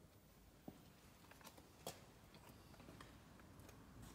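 Near silence: quiet room tone with a few faint, scattered clicks and ticks.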